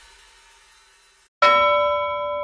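The last of the music fading away, then about one and a half seconds in a single bell-like chime is struck and rings on with several steady tones.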